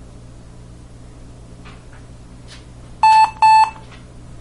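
HP Pavilion dv6000 laptop beeping twice, about three seconds in: two short, identical, high electronic beeps close together. They come as the BIOS screen appears, the sign that the oven-baked motherboard has come back to life and is booting. A steady low hum runs underneath.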